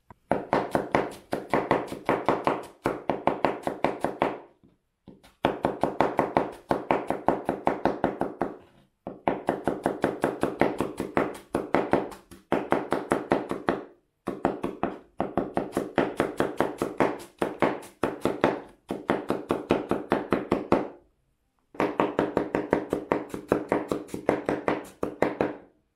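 Kitchen knife slicing red onion on a wooden cutting board: quick, regular taps of the blade striking the board, several a second, in runs of a few seconds with short pauses between them.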